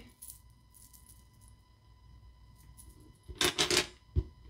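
A rosary's beads clicking as it is handled: a few light clicks just after the start, then a louder jangling clatter lasting about half a second near the end as it is set down.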